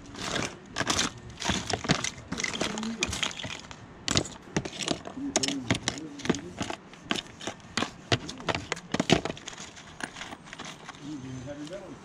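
Small plastic and metal odds and ends clicking and rattling in a plastic storage tote as a gloved hand rummages through them, in quick, irregular clicks.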